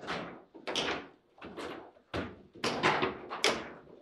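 Table football in play: the ball being struck by the figures and knocking off the table, with the rods clacking, as a quick irregular series of sharp knocks. About seven loud knocks, the loudest a cluster a little under three seconds in and again at about three and a half seconds.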